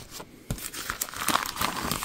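Clear plastic sheet protector crinkling and rustling as a card certificate is slid out of it, with light crackles starting about half a second in.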